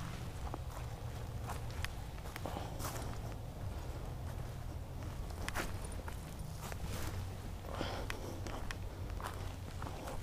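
Footsteps of a person walking along a muddy dirt path scattered with dry grass, a string of soft, irregular steps over a steady low rumble.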